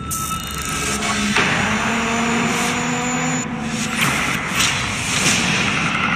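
Movie trailer soundtrack: music mixed with loud sound effects, starting suddenly after a moment of silence and keeping a steady level.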